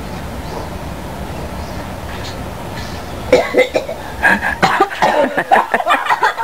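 A low steady rumble, then from about three seconds in a person coughing and laughing in quick, uneven bursts.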